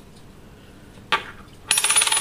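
A metal coin dropped onto a ceramic saucer: one sharp click about a second in, then near the end a fast, high ringing rattle as the coin spins and settles on the dish.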